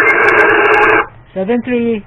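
Yaesu FT-710 transceiver's speaker playing a 40-metre SSB signal as a loud, narrow-band hiss of static, which cuts off abruptly about a second in as the receiver audio falls silent. A man's voice then starts speaking near the end.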